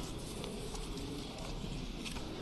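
Steady background noise of a large chamber, with faint scattered clicks and knocks from people working at the desks.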